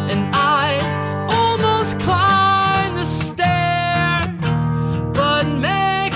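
Male voice singing a melody over a strummed acoustic guitar, in an acoustic rock performance.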